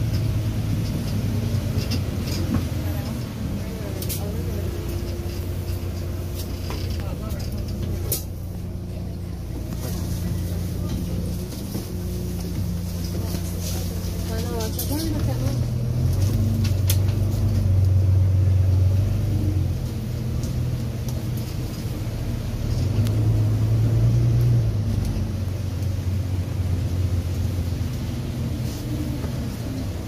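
Engine and drivetrain of a Volvo B9TL double-decker bus with Wright Gemini 2 body, heard from inside the lower deck: a low drone whose pitch changes in steps as the bus moves through its gears. It is loudest about halfway through and again a little later. Faint passenger voices sit behind it.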